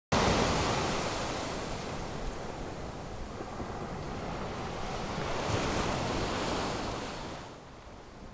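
Ocean surf rushing on a beach, a steady wash of noise that starts suddenly, swells again with a wave about five seconds in, and fades out near the end.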